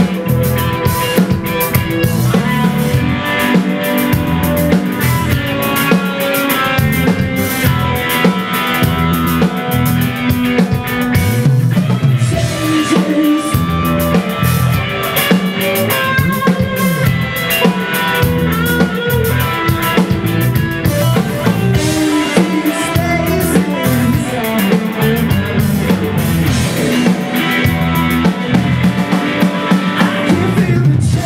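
Live rock band playing an instrumental passage through the PA: distorted electric guitars, bass guitar and a full drum kit keeping a steady beat, with no singing.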